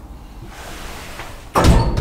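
Hydraulic platform lift door giving a loud bang near the end, followed by a second knock about half a second later, after a quieter hiss.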